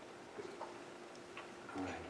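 A few faint clicks and taps of small communion cups being handled and drunk from, with a soft knock near the end. A faint steady hum lies underneath.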